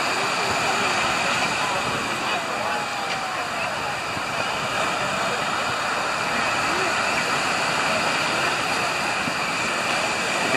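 Steady ocean surf breaking on a sandy beach, mixed with wind on the microphone. Faint voices of people on the beach are heard through it.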